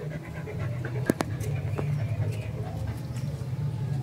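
A dog panting steadily in the heat, with a couple of sharp clicks about a second in.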